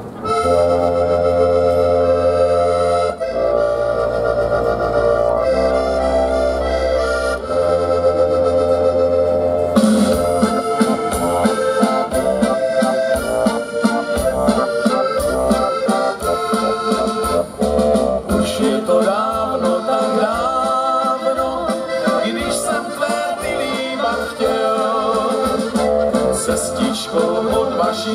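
Two accordions and an electronic keyboard playing the instrumental introduction to a romantic song. For about the first ten seconds there are held chords over a bass that changes every couple of seconds, then a moving melody runs over the chords.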